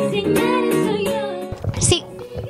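A woman singing a pop song live with acoustic guitar accompaniment. The music cuts off abruptly about one and a half seconds in.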